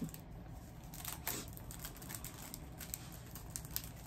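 Faint handling of clear plastic packaging: a few scattered small clicks and soft rustles over low room tone.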